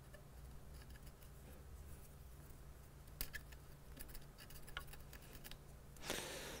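Faint, sparse clicks and light scrubbing of an alcohol-soaked cotton swab working over corroded traces on a laptop logic board, a few clicks clustered past the middle, over a low steady hum.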